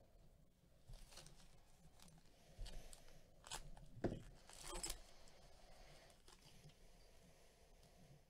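Plastic trading-card pack wrapper being torn open and crinkled by gloved hands: faint, a scatter of short crackles between about one and five seconds in, loudest around four seconds.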